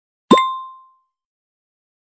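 Intro sound effect: one quick rising plop with a bright ding ringing over it, fading away within about half a second.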